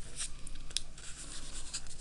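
Origami paper rustling and crinkling under the fingers as its corners are folded in towards the middle, with a few short, crisp scrapes as the paper is pressed and creased.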